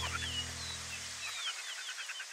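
Small birds chirping in quick runs of short, curved notes, over sustained music tones that fade out about a second and a half in.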